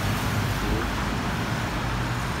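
Steady road traffic noise from vehicles passing on a busy multi-lane road, a pickup truck among them.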